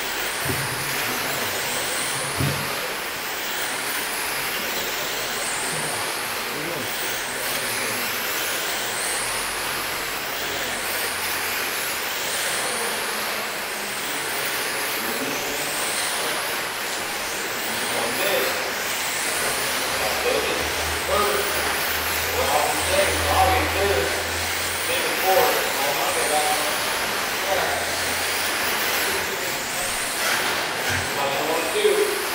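1/10-scale electric RC sprint cars racing on a dirt oval: a high-pitched motor whine that rises and falls over and over as the cars lap, over a steady hiss of tyres and track noise.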